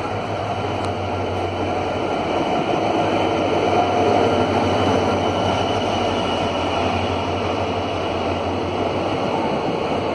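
EMD WDP4D diesel locomotive, with its two-stroke V16 engine, running slowly past as it pulls into the platform. The engine is loudest about four seconds in, followed by the steady noise of passenger coaches rolling by.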